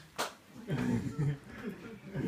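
A single sharp smack of hands just after the start, then a person's voice making vocal sounds without clear words for about the last second and a half.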